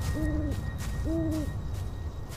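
Owl hooting twice, two even half-second hoots about a second apart, over a low rumble.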